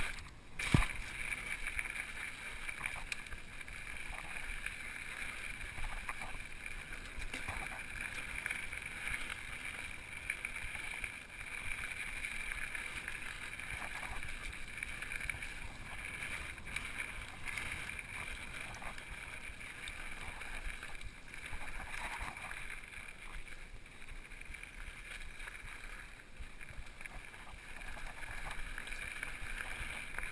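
Mountain bike riding fast down a dirt trail: a steady rush of tyre and rattle noise over the ground, with one sharp knock about a second in.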